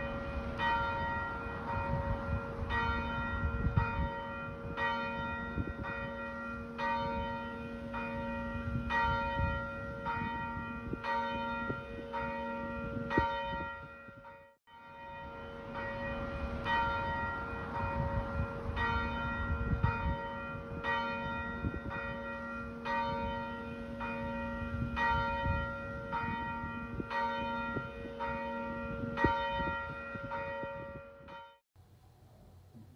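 Church bells ringing in a quick, steady series of strikes, about two a second, with a low hum ringing on beneath them. The sound breaks off about halfway through and then starts over.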